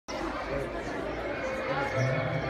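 Several people talking at once in the background: indistinct chatter, with no music yet.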